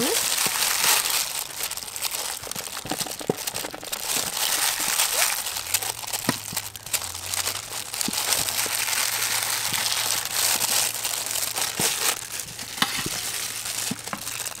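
Knife cutting dragon fruit held in a loose plastic glove, with the glove crinkling and pieces dropping into a steel bowl: a steady crinkly hiss broken by many small clicks and taps.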